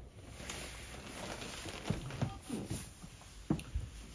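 A few soft knocks and rustles, about two seconds in and again near the end, over a faint steady hiss: someone moving about and shifting their weight on a floor.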